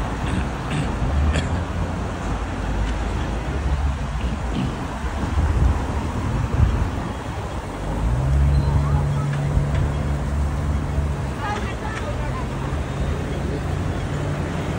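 City street traffic with wind rumbling on the microphone. About eight seconds in, a nearby vehicle's engine adds a steady low hum, loudest for about three seconds and then fainter.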